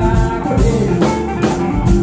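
A live band playing Malian afropsychedelic music: electric guitars over a drum kit, with a steady low beat about twice a second.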